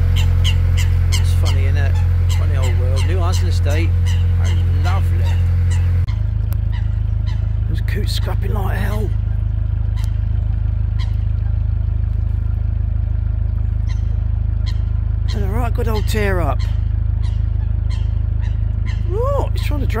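Coots squabbling on the water, giving three short bursts of honking calls spread through, over a steady low rumble. For the first six seconds a narrowboat's engine runs with a steady low hum, which stops abruptly at a cut.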